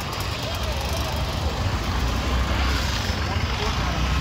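Busy street noise: a steady low rumble of nearby cars and scooters, with faint chatter from the crowd around.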